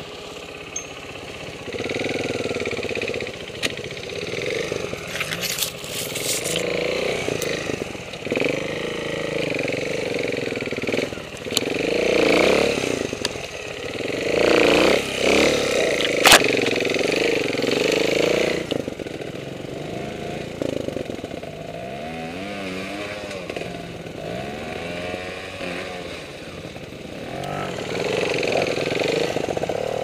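Trials motorcycle engine running at low revs, blipped up and down again and again as the bike is picked slowly through the scrub, with a few sharp clicks and a loud snap about sixteen seconds in.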